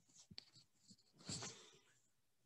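Near silence: room tone, with a faint click and a brief soft rustle about a second and a half in.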